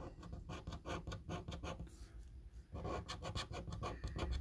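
A coin scratching the coating off a paper scratch card in quick, repeated strokes, with a short pause about halfway through.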